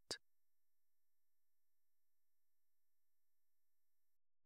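Near silence: a pause in the narration with only a very faint steady high tone.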